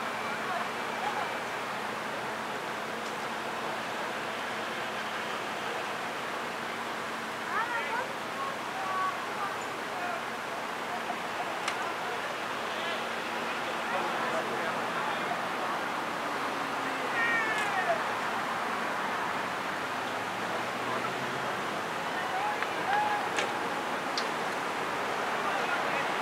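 Steady outdoor background noise, a continuous rushing hiss, with scattered bird chirps: short gliding calls about 8 seconds in, again around 17 seconds, and near the end.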